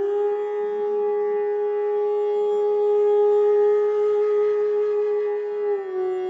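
A flute holding one long, steady note, which dips slightly in pitch near the end, over a soft sustained drone.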